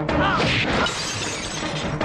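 A shattering crash, like something breaking, about half a second in, over steady background film music.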